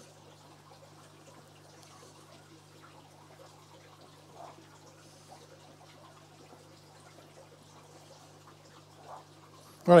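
Quiet room tone: a steady low hum with a faint trickle of water, and a few soft clicks from a screwdriver tightening the screws of a terminal-block wire connector.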